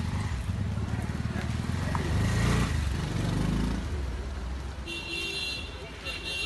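A motor vehicle's engine running close by, growing louder about two seconds in and easing off by about four seconds. A horn-like steady tone sounds near the end.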